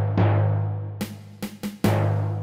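Sampled General MIDI timpani from a Roland SC-55 soundfont playing a MIDI track: a low strike rings out and fades, then a quick run of sharper drum hits comes near the end.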